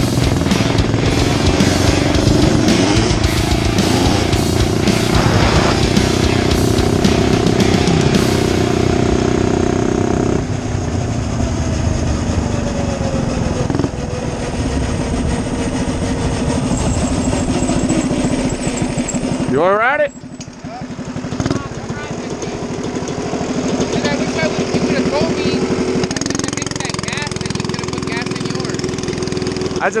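Small motorbike engine running under way at a fairly steady speed, its note shifting in steps, with wind rushing over the camera microphone. About two-thirds of the way through the engine note suddenly drops and climbs again.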